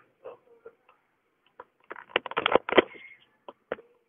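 Hand saw cutting a notch into a thin perforated steel rail: a quick run of short, sharp saw strokes about halfway through, with a few faint taps before and after.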